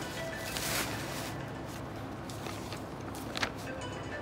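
A sheet of paper rustling and crackling in short bursts as it is unfolded and handled, over faint background music.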